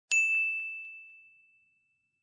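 A single bright bell-like ding, struck once and ringing out as it fades away over about a second and a half, with a few faint quick echoes in the first second.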